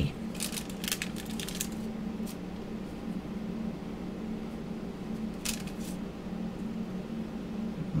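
Hands handling small polymer clay pieces on a sheet of thin paper: brief scratchy rustles and light clicks in the first couple of seconds and again about five and a half seconds in, over a steady low hum.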